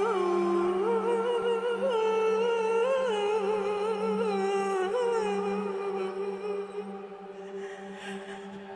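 A woman's solo voice singing a slow melody with wavering, ornamented pitch over a steady low drone. The voice grows softer in the last couple of seconds.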